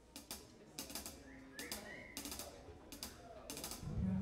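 Scattered, irregular drum strikes and snare and cymbal taps, a drum kit being tried out between songs rather than played in time. A low note comes in right at the end.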